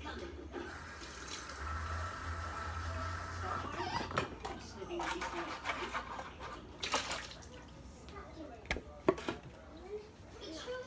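Tap water running into a sink for a couple of seconds, then scattered knocks and clinks as things are handled at the sink.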